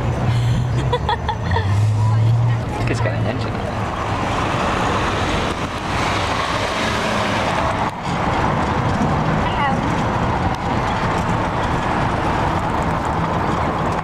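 Steady road noise of a ride over cobblestones in city traffic: rolling rumble and rattle, with a low hum in the first few seconds.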